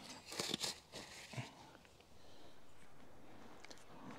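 Disposable gloves being peeled off the hands: a few short, faint crinkly snaps in the first second and a half. A faint steady hiss follows.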